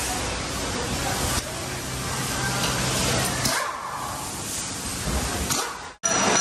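Steady rushing hiss, like compressed air from a workshop air line, with a low hum beneath; it dips briefly about three and a half seconds in.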